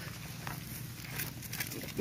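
Faint shuffling and a few light hoof steps of a young sheep being held by its collar on dry, leaf-strewn ground, over a low steady background hum.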